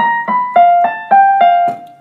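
Piano played note by note: a short melody of evenly spaced single notes, about three or four a second, high repeated notes stepping down lower partway through, then breaking off near the end. It is a piece still being learned, stopped where the player doesn't know the rest.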